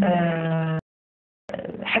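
A woman's voice holding one long, steady drawn-out vowel, a hesitation sound between phrases, that cuts off suddenly into dead silence for about half a second before she speaks again.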